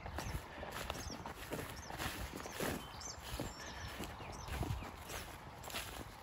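Footsteps walking through short mown grass and hay stubble, a step roughly every second.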